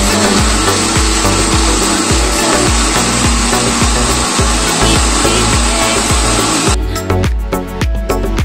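Onions and bay leaves frying in oil in a pressure cooker pan, a steady sizzling hiss that stops abruptly near the end, over background music with a beat.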